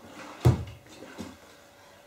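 A single thump about half a second in that dies away quickly, followed by faint rustling movement.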